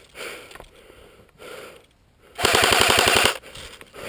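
AK-style airsoft rifle firing one rapid full-auto burst of just under a second, about fifteen shots a second, starting a little past the middle.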